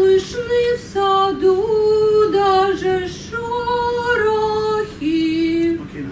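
A woman singing a few long held notes in three short phrases, her pitch stepping up and down, as a voice exercise while the coach guides her posture.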